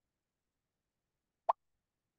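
A single short pop about one and a half seconds in: the Quizizz game lobby's alert sound as a player joins the game.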